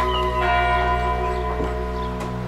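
Church bells ringing, their tones overlapping and hanging on, with a fresh strike about half a second in.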